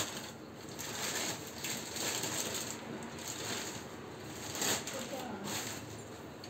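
Thin plastic bag crinkling and rustling in irregular bursts as it is handled and pulled back from blocks of paraffin wax.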